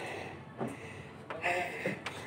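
Quiet open-air ambience with faint, distant voices, briefly a little stronger about a second and a half in.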